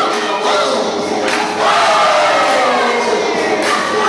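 Crowd of onlookers shouting and cheering over loud music, with one long drawn-out shout near the middle that slides down in pitch.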